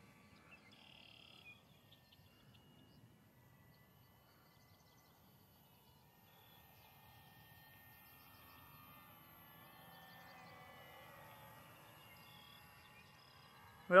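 Very quiet open-field ambience: faint short bird chirps in the first couple of seconds, then a faint steady hum that swells slightly past the middle and fades before the end.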